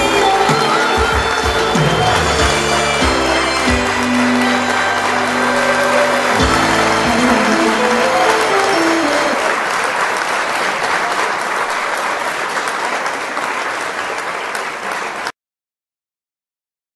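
The instrumental accompaniment of a song playing its closing bars with audience applause over it. The music ends about nine seconds in, and the applause carries on, slowly fading, until it cuts off suddenly near the end.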